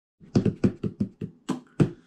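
Hands drumming on the top of a cardboard shipping box: about eight quick taps and slaps in a loose rhythm.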